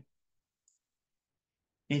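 Near silence in a pause of a man's lecture speech, broken only by one tiny, faint click about two-thirds of a second in. A man's speech ends at the very start and resumes near the end.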